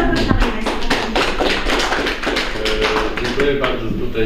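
Audience applauding: many hands clapping at once, dense and irregular, with a voice heard over it near the end.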